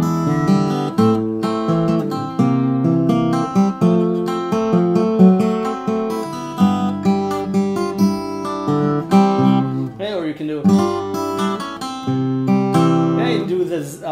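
Taylor acoustic guitar played fingerstyle, arpeggiating rich gospel-style blues chords in a gentle shuffle rhythm, with the chords changing every second or so.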